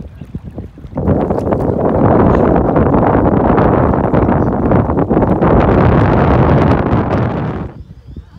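Wind buffeting the microphone: a loud, rumbling rush that comes up about a second in and cuts off suddenly near the end.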